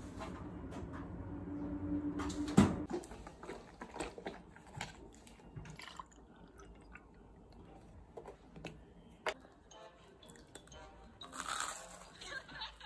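Kitchen handling sounds: a low hum builds and ends in one sharp click about two and a half seconds in, the loudest sound. Scattered light knocks follow, then juice pours from a plastic jug into a glass.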